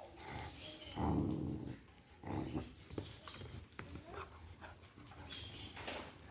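Two young dogs play-fighting, giving a few short growling and whining vocal sounds, the loudest about a second in and another about two and a half seconds in.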